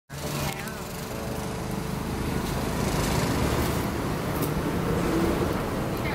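Steady street traffic noise: a low rumble of passing vehicle and motorcycle engines, with faint voices in the background.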